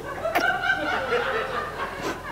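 A person laughing: a drawn-out, wavering chuckle.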